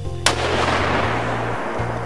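A single 7mm-08 rifle shot about a quarter second in, followed by a long echo that dies away over the next second.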